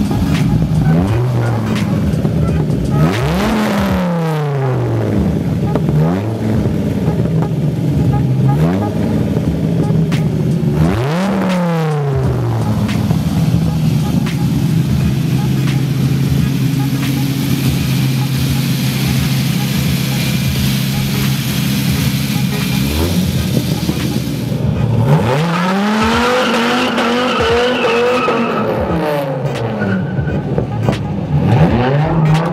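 Dodge Viper 8.3-litre V10 swapped into a Ford Sierra being revved: a few sharp blips up and down, then held at a steady raised speed for several seconds. Near the end the revs rise and fall in one long sweep as the car spins its tyres and pulls away.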